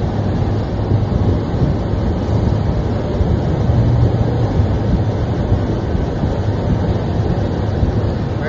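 Steady outdoor rumble of wind on a phone microphone mixed with road traffic noise, heaviest in the low end.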